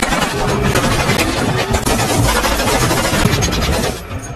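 Loud, dense battle sound from a war film: engines running under a steady crackle of gunfire. It drops away right at the end.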